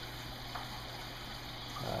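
Water running steadily into an acrylic aquarium sump as it is being filled.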